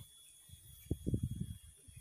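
A quick run of soft, low thumps and rustles about a second in: handling noise close to the microphone as a hand grips a caught eel.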